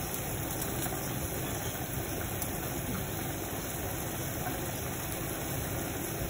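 A steady low hum and hiss that stays level and unchanged throughout.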